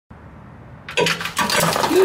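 Engine coolant suddenly gushing from an opened drain under the truck and splashing into a plastic drain pan, starting about a second in.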